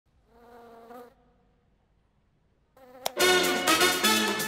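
A faint, steady buzzing hum lasting under a second, then a pause. About three seconds in, a click, and loud electronic dance music with a beat starts.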